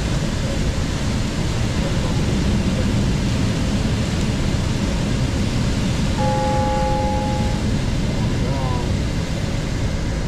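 Steady rushing cockpit noise of a Gulfstream G650 in flight through cloud. About six seconds in, a steady two-pitch electronic tone sounds for about a second and a half.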